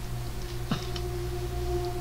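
Traffic going by outside: a low rumble with a steady droning hum, and a higher tone joining near the end. There is a single click about three quarters of a second in.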